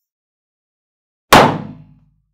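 An inflated latex party balloon bursting with a single loud bang a little over a second in, popped by being pressed down onto a board of upright nails. The bang dies away within about half a second.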